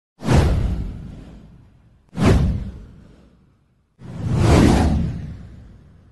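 Three whoosh sound effects of a title animation, about two seconds apart. The first two hit suddenly and fade out over a second or so, and the third swells in more slowly before fading.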